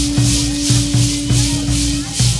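Danza de pluma music: dancers' hand rattles (sonajas) shaking in rhythm with a steady drumbeat, over one long held note.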